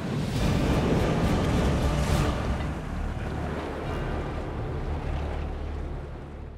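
A loud rushing roar of gas flame effects bursting on a ship at sea, mixed with wind and waves. It comes in abruptly and eases slightly after about three seconds.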